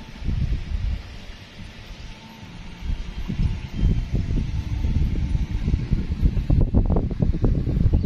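Wind buffeting the microphone in irregular low rumbling gusts, softer at first and growing louder and denser about three seconds in.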